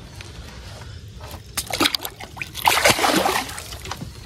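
Channel catfish released from a boat back into the water, splashing as it hits and swims off. A short run of splashes starts about a second in, with the biggest in the second half.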